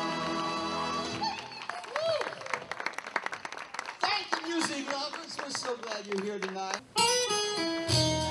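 A live band's held final chord ends about a second in, followed by audience applause with cheering voices. Near the end, after a brief gap, the band strikes up the next song with guitar and keyboard.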